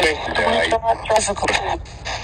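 Spirit box radio sweeping through stations, playing choppy fragments of broadcast voices over static hiss. The investigator takes the fragments for a spirit's answer ('difficult').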